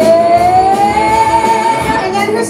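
Live rock band playing, with one long note sliding upward and then held.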